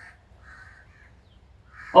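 Crow cawing faintly, about three short caws in the first second or so.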